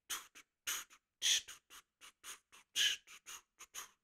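A man sounding out a drum beat with his mouth: quick, hissy percussive mouth sounds, about fourteen irregular strokes, imitating the drummer's steady pattern.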